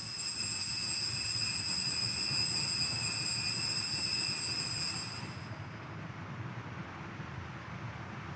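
Altar bell ringing at the elevation of the host: a bright, high ringing of several steady tones that starts suddenly, holds for about five seconds and then dies away.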